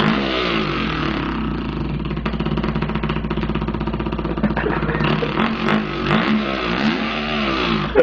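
A man's voice imitating a two-stroke dirt bike engine with his lips and throat: a continuous buzzing drone that rises and falls in pitch several times, like the bike revving and shifting.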